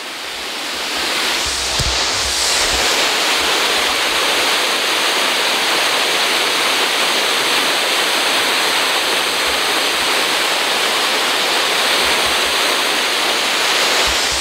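Artificial waterfall: a large volume of water pouring over rock ledges close by, a loud steady rushing.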